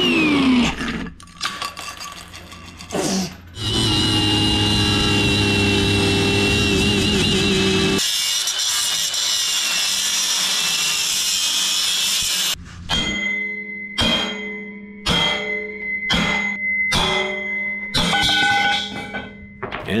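Milwaukee cordless angle grinder with a cut-off wheel cutting through steel cross members, running steadily with a wavering whine for about nine seconds before stopping. Music with a steady beat follows.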